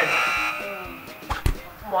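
A short held, nasal voice sound that fades over the first half-second, then two light clicks close together about a second and a half in.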